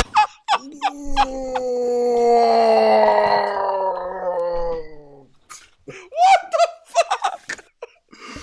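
Men laughing hard: a few short bursts of laughter, then a long high wail of laughter that slides slowly down in pitch for about four seconds, then more broken gasping laughs.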